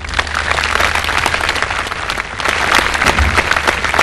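Large audience applauding steadily, many hands clapping at once, right after the speaker's closing "thank you very much".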